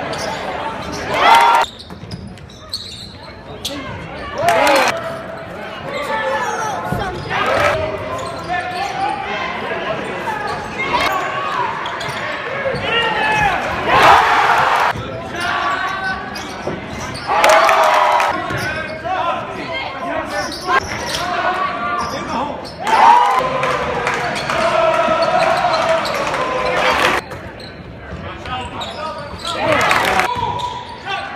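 Basketball game sounds in a gym, heard from the stands: a ball bouncing on the hardwood under a steady mix of spectators' voices, with several short, louder bursts of crowd noise as shots go in. The sound breaks off abruptly at each cut between game clips.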